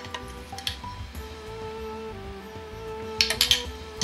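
Soft background music, a slow melody of held notes, with a few short clicks about three seconds in.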